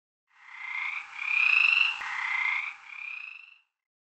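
A frog croaking four times in a row, each call a short, slightly rising tone, with the second call the loudest. There is a faint click about halfway through.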